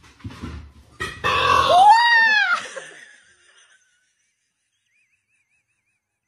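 A person's loud, rough yell that turns into one pitched cry, rising then falling, lasting about two seconds, then cuts out to silence.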